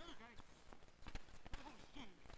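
Hockey sticks clacking irregularly against a street-hockey ball and the hard court. Players shout briefly at the start and again near the end.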